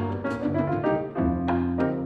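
Jazz-inflected piano trio playing an instrumental passage with no vocal: acoustic piano chords over bass and a drum kit, the drum strikes sharp and frequent.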